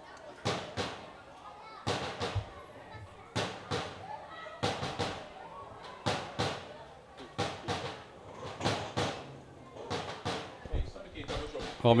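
Voices of people at the ground, mixed with irregular sharp knocks or slaps, about one or two a second.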